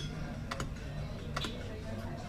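Sharp mechanical clicks from a fruit machine: a quick double click about half a second in and a single click a little before the end, over a steady low background hum.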